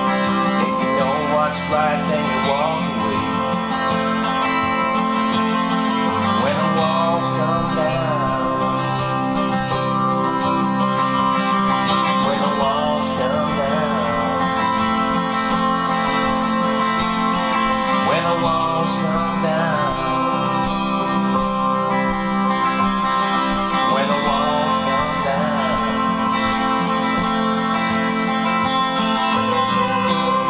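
Electric guitar played along with a full-band backing track in an instrumental passage. Phrases of bent, wavering notes come about every six seconds over steady sustained chords.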